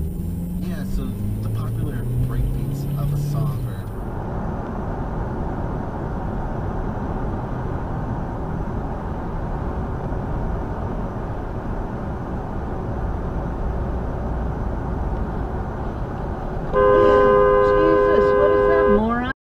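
Steady road and engine noise from inside a car driving on a highway. About a second before the end, a car horn starts, loud and held, as a tractor-trailer cuts in front.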